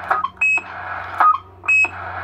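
Midland 77-102 CB radio fitted with a roger-beep and echo board: two short high electronic beeps, about half a second in and near the end. Between them are brief clipped sounds that repeat and die away through the echo.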